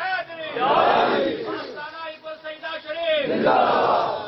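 Men's voices calling out loudly in long, drawn-out cries, with crowd voices.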